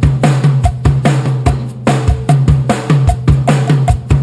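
Rock drum kit playing a fast, steady beat of kick and snare, about four to five hits a second, with deep booming low notes under the hits.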